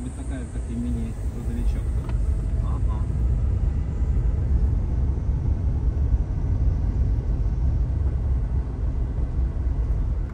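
Steady low rumble of road and tyre noise inside the cabin of a small electric car being driven.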